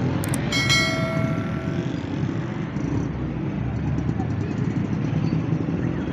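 Dense street traffic: auto-rickshaw, car and motorbike engines running in a steady rumble. About half a second in, a single metallic bell-like ring sounds and fades over a second or so.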